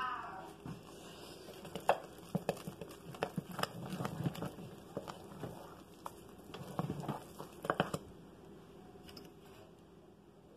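Wooden spoon stirring thick, fully cooked hot-process lye soap in a crock: irregular soft knocks and scrapes as the spoon works through the paste and against the crock, busiest from about two to eight seconds in.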